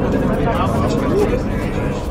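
A short voice sound and faint crowd voices over a steady low rumble.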